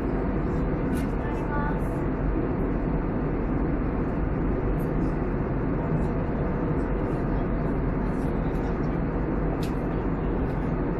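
Steady cabin noise of a jet airliner in cruise: an even, deep rushing noise from the engines and airflow, with a few faint clicks.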